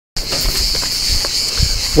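Insects buzzing in a high, steady drone, with a few faint knocks.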